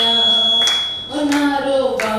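A woman singing into a microphone without words the recogniser could catch, drawing out long held notes with a short breath about a second in. A thin, high, steady tone runs under the first second.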